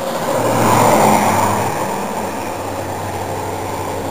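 A car passing by on the road: its tyre and engine noise swells about a second in, then slowly fades away.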